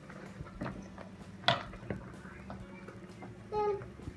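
Hands kneading sticky, fluffy shaving-cream slime in a plastic tub: quiet squishing with a few short sharp squelches, the loudest about one and a half seconds in.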